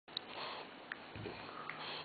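French bulldog gnawing a chew stick, snuffling through its nose as it chews, with a few sharp clicks of teeth on the stick.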